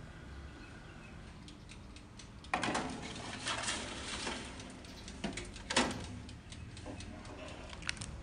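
Metal baking tray of foil tart cups sliding into an oven, a rough scrape of about two seconds that starts suddenly, followed by a few sharp knocks.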